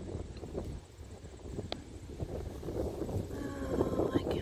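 Wind buffeting the microphone: an uneven low rumble that swells and eases in gusts.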